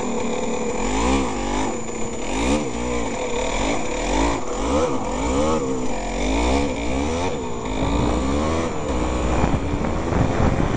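Yamaha DT200R's two-stroke single-cylinder engine revving up and dropping back over and over, about once a second, as the bike is ridden.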